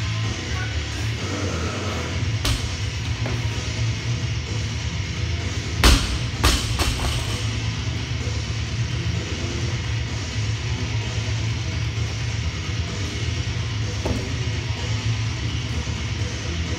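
Rock music with guitar and drums plays throughout. About six seconds in, a barbell loaded with bumper plates is dropped onto the rubber gym floor: one loud impact, then two smaller bounces within the next second.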